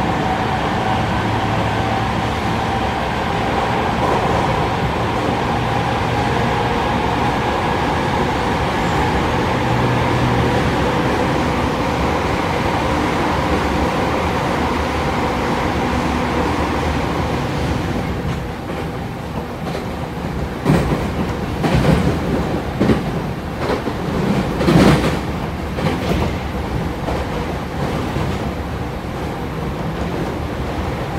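205 series electric train heard from inside the car, running at speed in a tunnel with a steady rumble and a faint hum. About 18 s in the sound drops as the train comes out of the tunnel, and a run of sharp wheel clacks over rail joints follows for several seconds.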